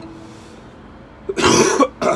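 A man coughs once, loudly, about one and a half seconds in, pausing his singing and acoustic guitar playing; the cough comes from a cold he is getting over. Before it, the guitar rings on faintly.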